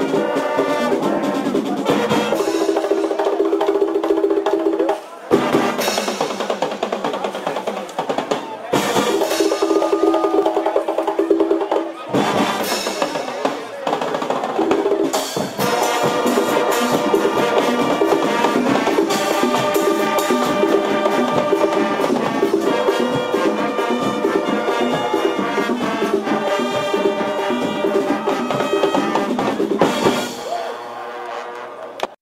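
Brazilian fanfarra marching band playing: the brass section holds loud chords over a driving drum and percussion rhythm, with a few short breaks in the sound.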